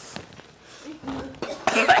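A man coughing into a plastic bag held at his mouth, reacting to a foul-flavoured Bean Boozled jelly bean, with laughter coming in louder near the end.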